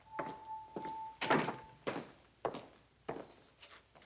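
Footsteps on a hard floor, roughly two steps a second, each with a short echo. A steady high tone sounds over the first two seconds, then stops.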